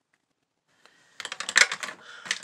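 Near silence, then about a second in a quick run of small plastic clicks and knocks: lipstick tubes and cases being handled and clicking against each other.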